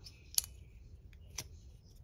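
Cold Steel Mini Tuff Lite back-lock folding knife being opened and closed by hand: two sharp clicks about a second apart as the back lock snaps. The knife is brand new, and its pivot may be a little too tight.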